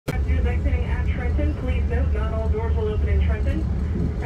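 Steady low rumble of an Amtrak Keystone passenger train running at speed, heard from inside the coach, under a conductor's announcement over the public-address system.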